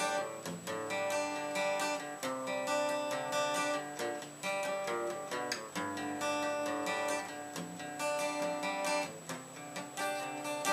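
Acoustic guitar played by hand, a run of chords with several strokes a second and the chord changing every second or so.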